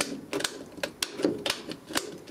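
Plastic rocker switches of a Clipsal double power outlet being flicked on and off, a run of sharp clicks several times a second. The switch snaps back on its freshly cleaned spring, a sign the sticking switch is fixed.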